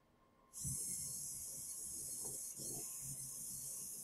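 The wheel servos of a small two-wheeled Arduino robot whirring as it drives, starting about half a second in. After about two seconds the whir breaks very briefly as the robot stops, then carries on through a short right turn and a second forward run.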